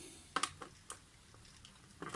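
A few light clicks of a screwdriver working a small screw in a circuit board, with quiet between them.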